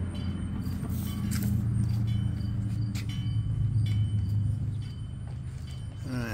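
A steady low mechanical hum runs throughout, with a few light clicks and knocks about a second in and again about three seconds in.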